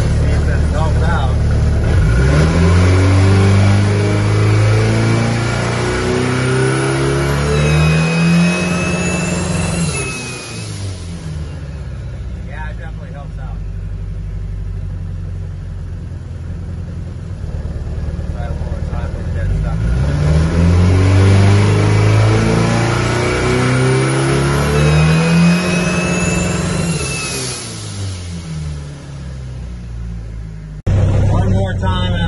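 Mitsubishi 4G63 four-cylinder with compound turbos, revved twice against the transbrake for a spool test: each time the engine note climbs and holds for several seconds, then drops back to idle. Near the top of each pull a high rising whistle and a squeak come in, a squeaky boost leak that is new to the owner.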